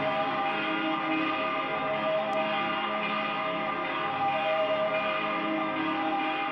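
Slow ambient music of sustained, ringing bell-like tones held over a steady drone, with no beat.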